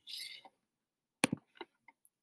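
Plastic counting discs being set into a plastic ten-frame tray: two sharp clicks close together a little over a second in, followed by a few fainter clicks.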